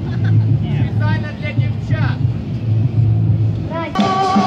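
Voices of an outdoor crowd talking and calling out over a steady low rumble, with no music playing.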